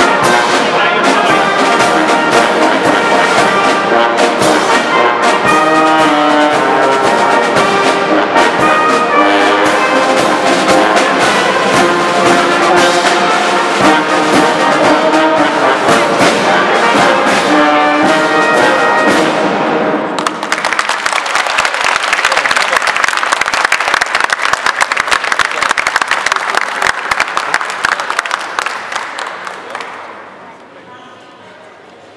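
Romanian military brass band with trumpets, trombones and bass drum playing a march, which ends about two-thirds of the way through. Audience applause follows and fades out near the end.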